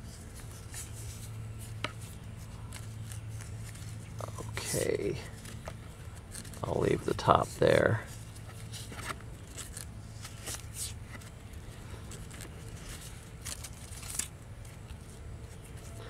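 Parafilm grafting tape being peeled from its paper backing and stretched around a graft: a few short rustling, tearing sounds about five and seven seconds in.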